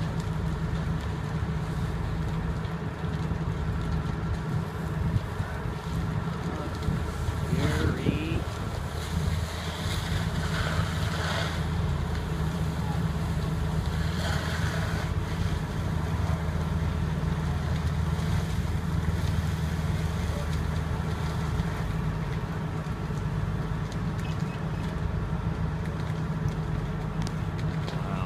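Fire engine's engine running steadily to drive its hose pump: a constant low drone, with wind rumbling on the microphone and faint distant voices now and then.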